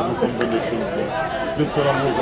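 Several voices talking at once, with one short sharp click about half a second in.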